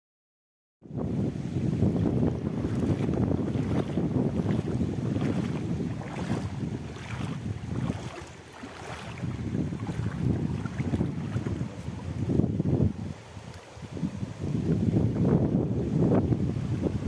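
Wind buffeting the camera microphone in loud, uneven gusts beside a shallow river, with the rush of water running over stones underneath. It starts abruptly about a second in, after silence.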